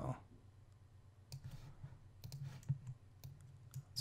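A few scattered, sharp computer mouse clicks.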